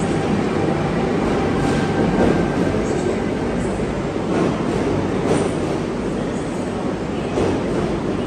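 Tangara double-deck electric train running past in an underground station: a steady rumble of wheels on rail, with a few irregular clicks.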